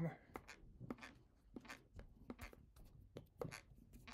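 Faint, irregular soft taps, claps and swishes of hands and clothing as a person signs in sign language, several short strokes a second with no steady rhythm.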